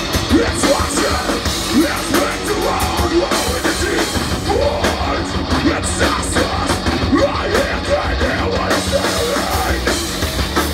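A live metal band playing: distorted electric guitar, bass guitar and drum kit, with a singer yelling into a microphone over them.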